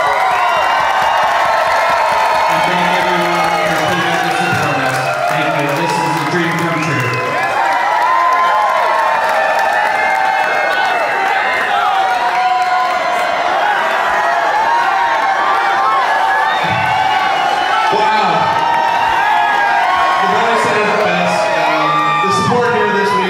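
A loud crowd of many voices cheering and singing together over music, with long held notes and no pause.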